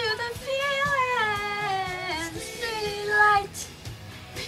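A young woman singing with a cold-roughened voice, one sung line of long held notes that slide downward in pitch, a short break partway through and a louder note just before the line ends.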